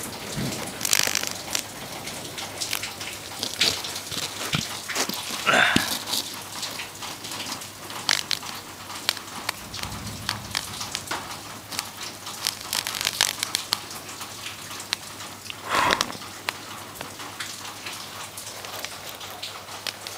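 Graphite pencil lead arcing and burning between jumper-lead clamps on a high current of about 180 A, giving a dense, irregular crackling and sizzling with a few louder bursts, as the lead breaks down in the air.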